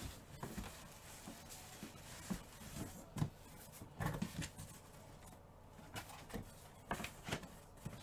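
Faint handling noise: scattered light clicks and soft knocks on a desk, with a few low thumps around three and four seconds in and again near the end.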